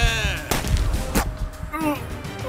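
Pistol gunfire as a film sound effect: a sharp shot about half a second in and another crack just over a second in, over background music.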